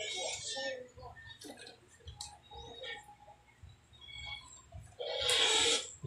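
Hand tools working electrical wire: a few sharp clicks and snips of pliers and wire strippers on the wire, with light handling noise. A louder hiss of about a second comes about five seconds in.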